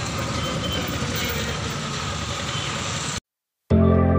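Steady city road traffic noise that cuts off abruptly about three seconds in; after half a second of silence, background music of sustained notes begins.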